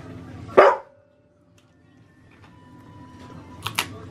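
A dog barks once, loudly, about half a second in. After a brief drop-out, a few short, sharp sounds come near the end.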